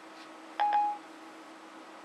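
Siri on an iPhone 4S sounding its short electronic chime through the phone's speaker: one clean beep about half a second in, the signal that it has finished listening to a spoken request. A faint steady hum runs underneath.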